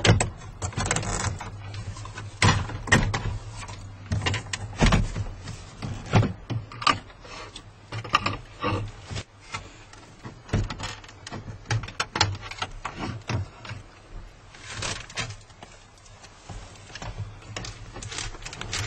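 Plastic dashboard trim panel being worked loose and pulled off by hand: irregular clicks, knocks and rattles of trim clips and panels, with a brief rustle near the end.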